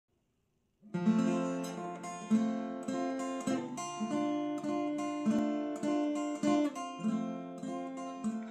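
Acoustic guitar playing the opening chords of a song, a new chord struck every half second or so, each ringing and fading; it begins about a second in.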